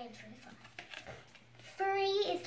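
Mostly a quiet pause in a small room. A short hummed voice comes at the start, a few faint taps follow, and a young child starts speaking near the end.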